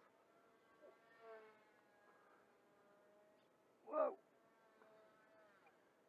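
Faint whine of a Honker Bipe 250 RC biplane's electric motor and propeller in flight, its pitch sliding down about a second in and again near the end, with a steadier lower tone between. A man exclaims "whoa" about four seconds in.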